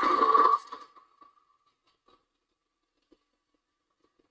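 A brief, loud screech-like sound effect from the anime's soundtrack: one steady high tone over a hiss. It falls away within about a second and fades out by two seconds, leaving near silence.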